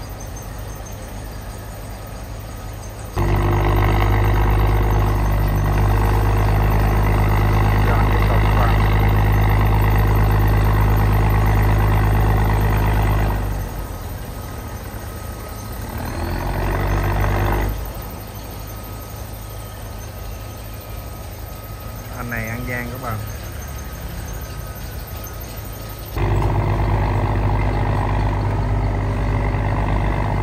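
Sand barge's diesel engine throttled hard to high revs for about ten seconds, dropping back with a brief swell, then throttled up again near the end. The engine is being run forward and astern to loosen the barge from the shoal it has run aground on. A short wavering cry is heard a little past the middle.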